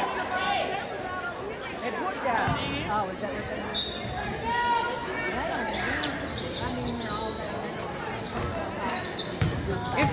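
A basketball bouncing on a gym's hardwood floor a few times, with shouts and chatter from players and spectators.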